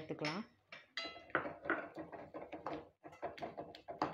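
Steel ladle stirring and scraping a thick masala in a stainless-steel pan, with repeated clinks against the pan and a short metallic ring about a second in.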